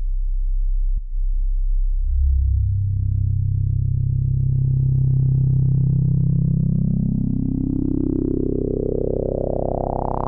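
Novation Bass Station II monophonic analog synthesizer holding one deep bass note. From about two seconds in, the note grows slowly and steadily brighter as the filter is opened by turning a knob.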